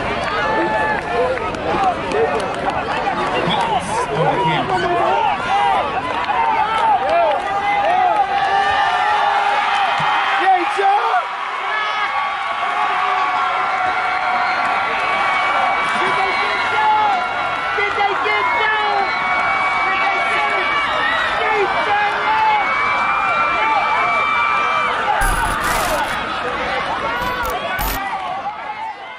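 Many voices shouting and cheering at once, overlapping so that no words come through, with some drawn-out yells in the middle.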